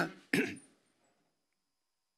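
A man's word trails off, then a single short throat clear about a third of a second in.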